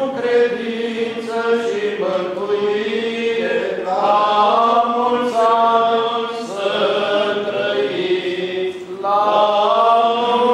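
Eastern Orthodox liturgical chant sung in church, a slow melody of long held notes moving from pitch to pitch.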